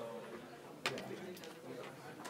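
Indistinct low murmuring voices in a lecture hall, with one sharp click a little before the one-second mark.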